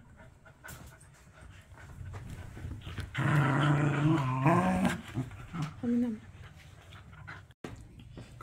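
A small white long-haired dog making a drawn-out vocal sound about three seconds in, lasting a second and a half and rising in pitch at the end, with a shorter call about two seconds later.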